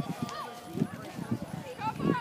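Scattered, fairly faint voices of players and spectators calling out across an open football field, with short knocks and calls as the teams wait at the line.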